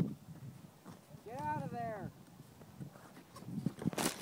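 A person's voice: one drawn-out call, about a second long, rising and then falling in pitch near the middle, over low outdoor background noise, with a few faint clicks near the end.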